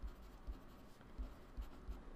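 Pen writing a number on paper: a run of faint, short scratching strokes.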